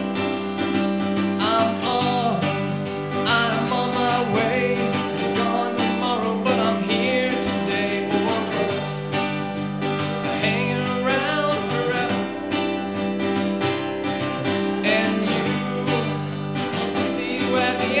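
Acoustic guitar strummed steadily in a live solo song, with a man singing along from about a second and a half in.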